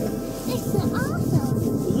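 Canada geese calling in short, arched honks on the shore and water close by, with a person laughing at the start.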